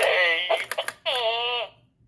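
Gemmy Animated Fart Guy novelty toy playing its recorded routine through its small built-in speaker: a drawn-out, voice-like sound in two stretches, the second a long wavering held note, stopping shortly before the end.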